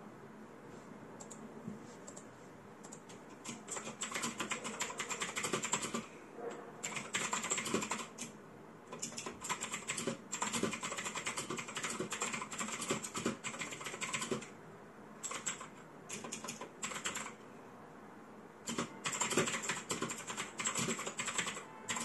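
Typing on an external mechanical keyboard: runs of rapid key clicks in bursts of a second or two, with short pauses between, starting a few seconds in.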